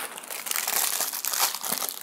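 Tissue paper crinkling and rustling as a hand rummages through it inside a cardboard box, a continuous run of small crackles.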